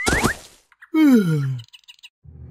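Cartoon pop sound effect as a character squeezes up out of a hole in the ground: a sudden burst with a quick rising squeak that fades within half a second. About a second in, a falling, voice-like groan follows.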